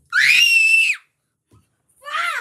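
A child's high-pitched scream, rising in pitch at the start and then held for about a second before stopping abruptly.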